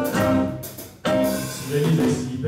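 A live band plays an instrumental passage on acoustic guitar, electric bass and drum kit, without singing. About a second in, the music drops away briefly, then the band comes back in all at once.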